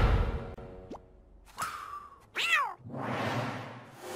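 Cartoon sound effects: a heavy hit dying away, a small pop about a second in, then a short cartoon cat yelp whose pitch bends up and down about two and a half seconds in. A whoosh then swells and fades.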